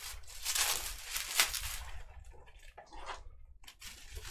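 Bubble wrap crinkling and rustling as it is handled and pulled around a bat, in irregular crackly bursts that are strongest in the first two seconds and fainter after.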